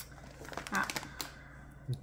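Foil-lined snack bag crinkling as it is handled and turned, a quick run of small irregular crackles.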